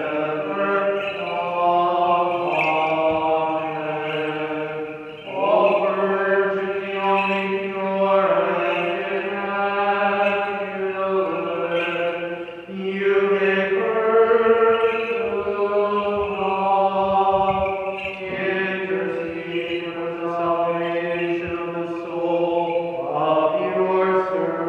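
Unaccompanied Byzantine-rite funeral chant sung by a man. Long held notes come in phrases of five or six seconds, with a short breath between phrases.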